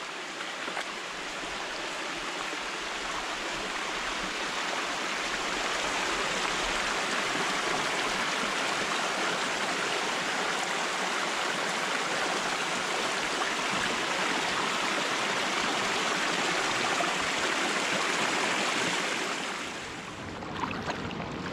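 Small creek cascading over rocks in shallow riffles: a steady rush of running water that grows louder over the first several seconds and fades away near the end.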